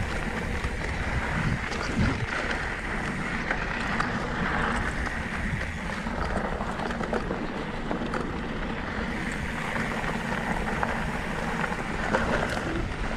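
Mountain bike riding fast down a dirt singletrack: steady wind rush on the camera microphone over the low rumble of knobby tyres rolling on packed dirt, with scattered small clicks and rattles from the bike.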